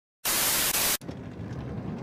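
Loud burst of white-noise static lasting about three quarters of a second and cutting off sharply, followed by a quieter crackling hiss: a static sound effect laid over an old-film-style intro graphic.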